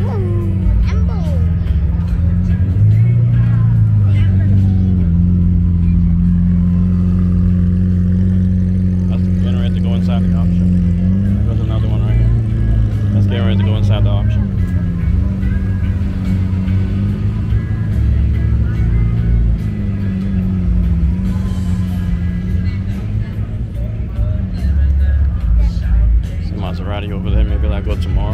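Lamborghini Aventador V12 engine running at low revs as the car creeps past, a steady low drone that rises and falls slightly a few times. Crowd chatter mixes in around it.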